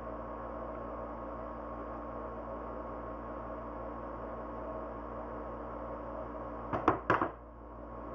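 Wire cutters snipping florist wire on a rope lure: a few sharp clicks close together about seven seconds in, over a steady background hum.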